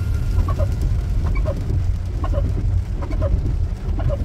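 Steady low rumble inside a car sitting in traffic in heavy rain, with a short high chirp about once a second.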